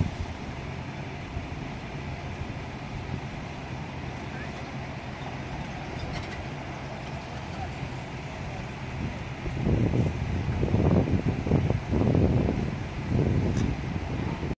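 Steady low hum of diesel work machinery at a street repair site, with a louder, uneven rumbling from about ten seconds in.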